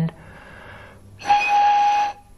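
An empty ballpoint pen casing blown across its open top, its bottom end stopped with a thumb: about a second of breathy air noise, then a steady whistle note for most of a second.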